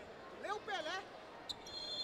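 Faint, echoing hall ambience of an indoor futsal court: distant shouting voices, a single sharp knock about one and a half seconds in, then a steady high two-pitched tone that starts near the end.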